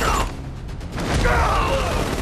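Action-film battle sound effects: a falling metallic whine at the start and again about a second in, over a low rumble, with some music in the mix.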